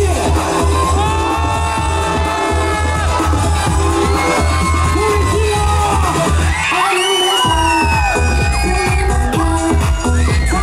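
K-pop dance track with female vocals and a heavy bass beat, played loud over outdoor PA speakers. The bass drops out briefly about seven seconds in, then comes back.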